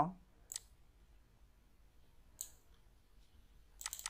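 A few faint computer mouse clicks, quiet between them: one about half a second in, another about halfway through, and a few small ticks near the end.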